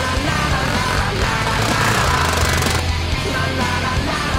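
Loud rock soundtrack with heavy, guitar-driven playing.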